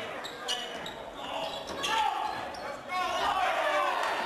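Basketball game sounds in a gym hall: a ball bouncing and several sharp knocks on the court, with indistinct players' and spectators' voices.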